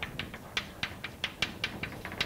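Chalk writing on a blackboard: a quick, irregular run of sharp taps, about six a second.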